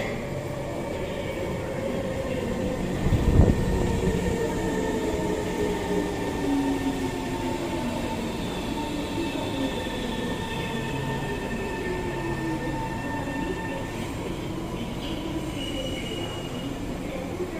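SMRT C151 train pulling into the station, its traction motors whining in several tones that fall in pitch as it brakes. A brief loud rush comes about three seconds in as the train sweeps past.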